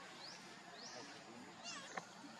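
Faint animal calls: a short rising chirp repeating every half-second or so, and near the end a brief, high, wavering call like a meow.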